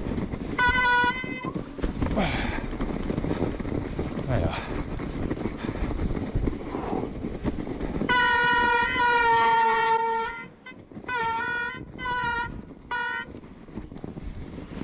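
Mountain-bike disc brakes (SRAM Code R) squealing in pitched bursts as the rider brakes: one short squeal about half a second in, a long squeal of about two seconds from about eight seconds in, then three short squeals. Underneath runs a steady rush of riding noise.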